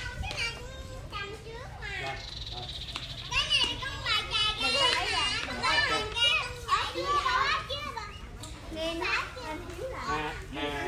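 Small children shouting and squealing excitedly in play. The cries are loudest and highest-pitched in the middle of the stretch, from about three to eight seconds in.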